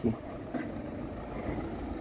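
Steady low rumble of street background noise, with no distinct events.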